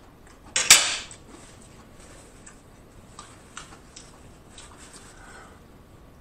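Eating sounds from a man at a meal: one sharp mouth smack under a second in, then a few faint, scattered clicks of quiet chewing.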